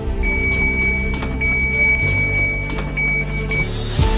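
A Schwinn treadmill console gives a high electronic beep as its buttons are pressed. The beep sounds in three long stretches, broken twice, and stops shortly before the end. Background music with sustained low notes runs underneath.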